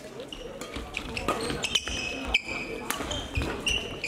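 Badminton hall sounds: several sharp racket hits on shuttlecocks and short high squeaks of court shoes on the floor, over a hubbub of voices.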